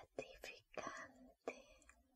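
Soft, close-up whispering by a woman in short breathy phrases.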